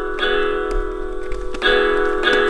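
Mattel Coco electronic toy guitar playing guitar sounds: a strummed note rings on, and another comes in near the end.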